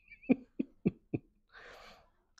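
A man's voice giving four short bursts about a quarter second apart, then a soft breathy exhale near the end.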